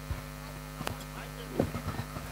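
Steady mains hum from the stage sound system through the open microphone, with a single faint click about halfway through.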